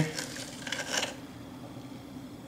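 Faint handling noise in the first second as a shiso cutting is drawn out of a plastic bottle of water, stem and leaves rubbing against the bottle, with a couple of small ticks; then only a low steady hum.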